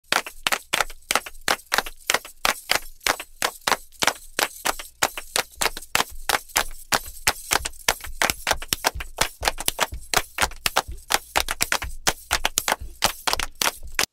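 Fast, loud percussion: sharp strikes about five a second with uneven accents in a steady rhythm, cutting off suddenly at the end.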